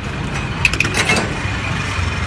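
Busy street background noise, with traffic and voices in the distance, and a few brief knocks around the middle.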